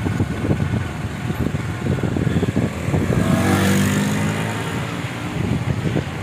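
A motor vehicle passing by on the road: its engine note and tyre noise swell about three seconds in and fade again over a second or two, over a steady low rumble.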